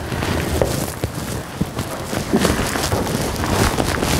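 Water running steadily from a hose into a bin, filling it for a disinfectant dip.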